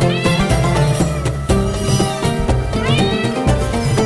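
A cat meowing twice, once near the start and again about three seconds in, each a short rising-then-falling call, over loud background music.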